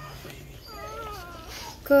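A Labrador–Treeing Walker Coonhound cross in labour whimpering faintly: one short, wavering whine near the middle as she strains to push out a breech puppy.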